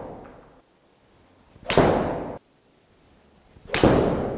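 Golf club striking balls off a hitting mat: two sharp cracks about two seconds apart, one near the middle and one near the end, each dying away over about half a second.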